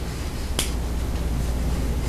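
A single sharp click about half a second in, over a steady low hum of the room.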